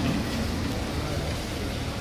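Steady background noise, a low rumble with hiss and no distinct event.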